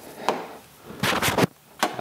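Handling noise as a power cable is pulled across the plastic case of a karaoke machine: a few short scuffs and rubbing sounds, then a short click near the end.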